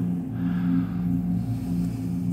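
Steady low electrical hum from a supermarket refrigerated dairy display case, with the camera close to its base.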